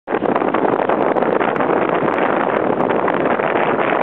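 Strong wind blowing across the camera microphone: a loud, steady rushing noise.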